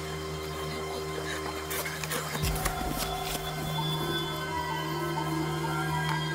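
Suspense film score of sustained drone tones. A few short sharp sounds come through between about two and three and a half seconds in, and a low rumble joins about halfway.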